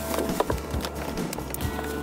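Background music with scattered clicks and rustles of plastic sheeting being handled and fastened at a tent door.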